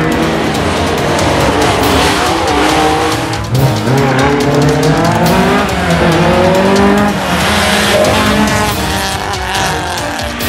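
Historic rally car engine revving hard on a special stage, its pitch climbing and dropping back with each gear change.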